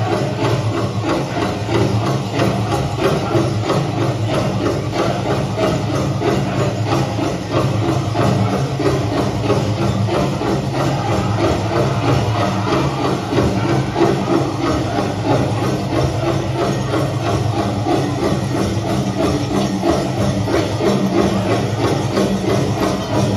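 Powwow drum group singing a grand entry song: a steady beat on a large shared drum under massed voices, played over a PA system.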